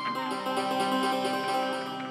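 Vietnamese chầu văn ritual ensemble playing an instrumental passage without singing: plucked moon lute (đàn nguyệt), bamboo flute and electronic keyboard together.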